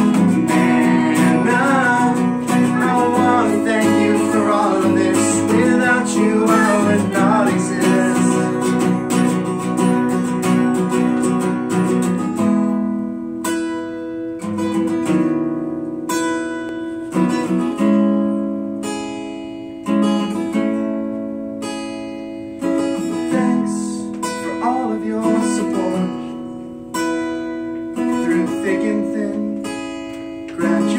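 Acoustic guitar strummed in steady chords, with voices singing along through roughly the first twelve seconds; after that the guitar plays mostly alone, each strummed chord ringing out and fading before the next.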